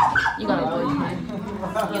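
Teenagers' voices talking and vocalising over each other, with no clear words.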